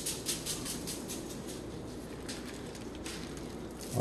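Handheld spice shaker shaken in quick, even strokes, about five a second, sprinkling dry rub onto raw brisket and foil; the shaking thins out and fades in the second half.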